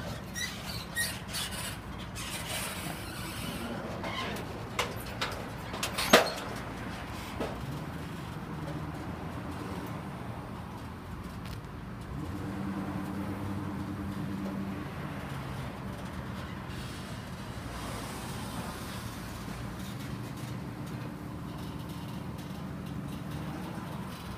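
A loaded boat trailer creaking and clicking as it rolls out behind a pickup truck, with a sharp clank about six seconds in. The pickup's engine then runs steadily under the towing load, louder for a few seconds around the middle.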